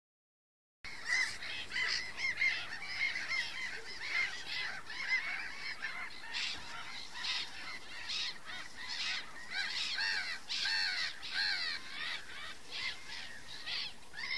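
A flock of gulls calling over the water, dense and overlapping, as they crowd in on food thrown for ducks. The calls begin about a second in and go on without a break.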